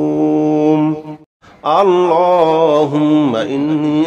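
A man chanting an Arabic supplication in a melodic recitation style. He holds one long, steady note that breaks off just over a second in, and after a brief pause he starts a new phrase whose pitch rises and falls.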